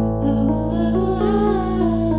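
A woman humming a slow wordless melody over a steady low drone and sustained keyboard notes.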